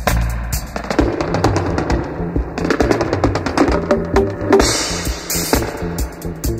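Roots reggae music with a bass line and drums, played continuously at full level.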